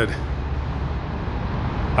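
Steady low rumble of vehicle and traffic noise in a parking garage, with no distinct separate events.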